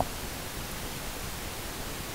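Steady hiss of the recording's background noise, with no other sound.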